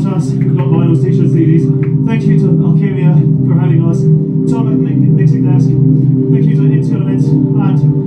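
Live rock band playing a sustained, droning passage on bass and guitars, with a voice heard over the music.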